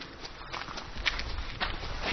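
Footsteps of a person walking at a steady pace on hard ground, about two steps a second.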